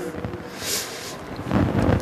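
Rushing noise on the speaker's microphone during a pause: a soft hiss just under a second in, then a low rush near the end.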